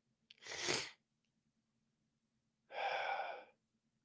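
A man's breath sounds: a short, sharp breath about half a second in, then a breathy, slightly voiced sigh lasting under a second about three seconds in.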